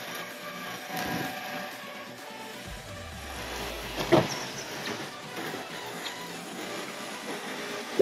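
Front passenger door of a 2011 Kia Cerato: a single short click about four seconds in as the handle is pulled and the latch releases, over steady outdoor background noise.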